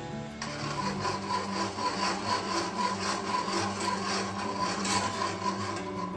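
Wire whisk beating milk and cocoa mixture in a pan, a rhythmic scraping of about three strokes a second that starts about half a second in.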